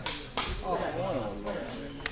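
Two sharp smacks of a sepak takraw ball being struck hard during an overhead spike, about a third of a second apart, the second the louder, then crowd voices calling out.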